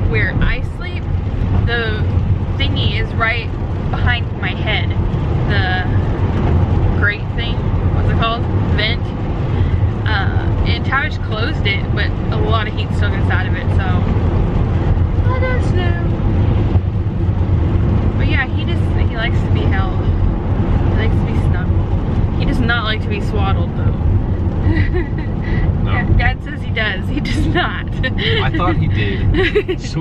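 Steady low road and engine drone inside a moving minivan's cabin, under ongoing conversation.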